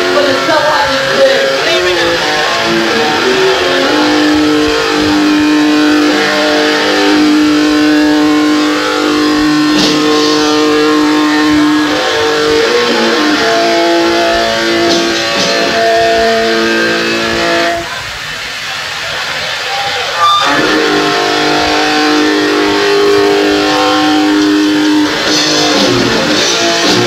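Hardcore punk band playing live on a lo-fi cassette recording, with distorted electric guitar chords held for seconds at a time. The guitar drops away for about two seconds near the 18-second mark, then comes back in with a sharp hit.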